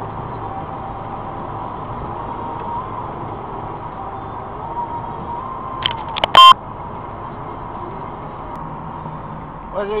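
Steady road and engine noise inside a moving car's cabin, picked up by the dashcam, with a short, loud beep about six seconds in.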